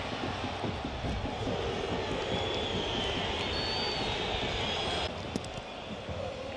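Steady noise of a stadium football crowd, with a long high whistle over it from about two to five seconds in. The sound drops abruptly about a second before the end.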